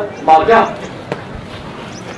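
A man speaking into podium microphones: a short phrase, then a pause of more than a second filled with a steady low hiss and broken by one faint knock.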